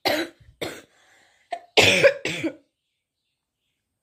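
A woman ill with fever coughing in a fit of about five coughs, the loudest two coming together about two seconds in.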